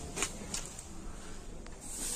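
Faint background noise with a few light clicks, and a hiss that comes in near the end.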